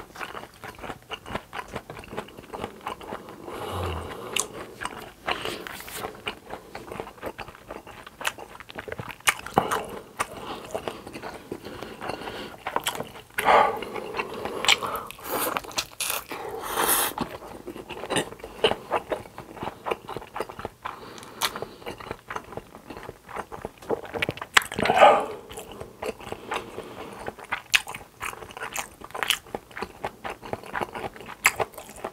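Close-miked eating sounds: a person biting into and chewing a block of Spam coated in spicy mayo sauce, with many short mouth clicks throughout and a few louder spells of chewing.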